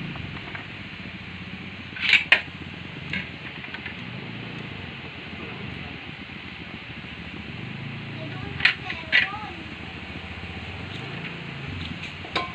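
A few short clinks of a plate and utensils against a cooking pot as string beans and okra are tipped in, about two seconds in and again near nine seconds, over a steady background hiss.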